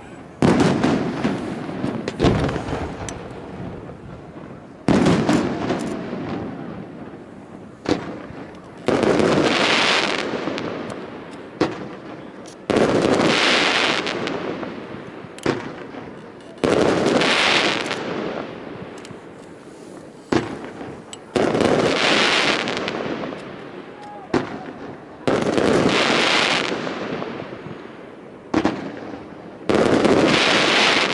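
Aerial fireworks shells launched and bursting one after another, about every three to four seconds. A lighter launch thump comes about a second before each loud bang, and each bang trails off over several seconds.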